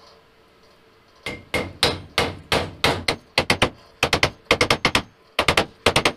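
A mallet striking a tube set over a bearing, driving the bearing into an aluminum bearing tube. The blows start about a second in and come quickly, some in rapid pairs and triples.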